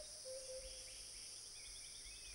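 Faint jungle ambience: a steady, high-pitched insect drone, with a faint held tone in the first second and a few faint chirps.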